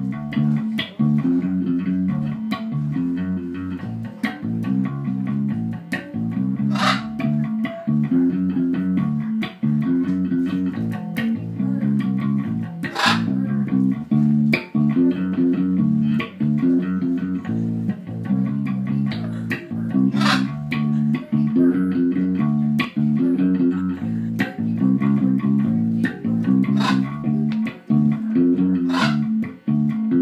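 Electric bass guitar played through an amplifier: a steady, rhythmic riff of repeating low plucked notes. A few brief sharp sounds cut across it now and then.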